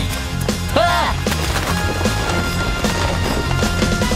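Cartoon background music with a few short knocking sound effects and a brief swooping pitched sound about a second in.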